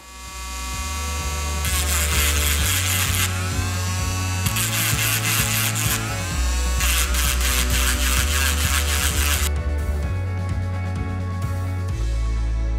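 Background music with a steady bass line, over a Dremel Stylo pen-style rotary tool grinding a piece of Baltic amber in three bouts of a couple of seconds each, working off its stubborn surface layering.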